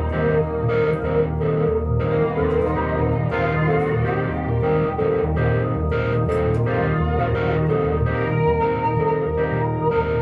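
Improvised instrumental jam: electric guitar played through effects over a Rhodes electric piano, held notes layered over a steady low part with frequent new notes picked in.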